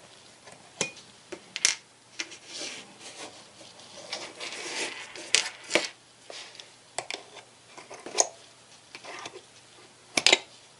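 Slotted screwdriver prying cartridge fuses out of their metal clips in a digital multimeter's fuse compartment: irregular sharp clicks with light scraping between them.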